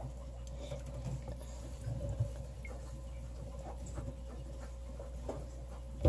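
Faint, scattered taps and light scratching of hands working inside a small plastic fish container, over a low steady hum.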